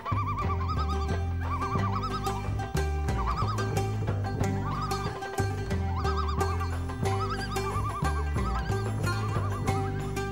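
Music accompanying a fire dance: a deep, steady bass line under a high, warbling melody in short repeated phrases, with a regular ticking beat.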